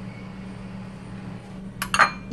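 Two quick clinks of a kitchen utensil against dishware near the end, over a steady low hum.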